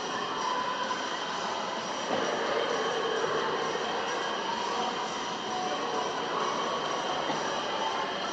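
Indoor swimming pool ambience: a steady wash of water noise from swimmers, echoing in the tiled hall, with no distinct strokes or splashes standing out.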